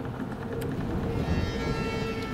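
Background film score of held, sustained notes, with higher tones coming in about halfway through.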